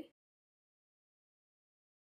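Near silence: the soundtrack is dead quiet, with no sound of the trimmer or of anything else.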